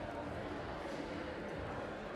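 Faint, steady background noise of a large indoor food hall, with indistinct chatter.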